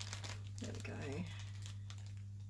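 Irregular crinkling as a roll of non-woven tracing fabric is unwrapped from its packaging and handled.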